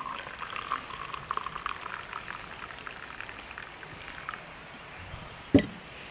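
Freshly pressed coffee poured from a JetBoil Flash cooking cup into a cup: a splashing, trickling pour for about four seconds that then stops. A single sharp knock comes near the end.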